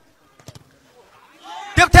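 Mostly near silence, with a faint click about half a second in, then a man's commentary voice starting near the end.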